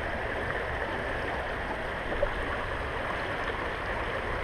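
Shallow stream running over a rocky bed: a steady rush of rippling water.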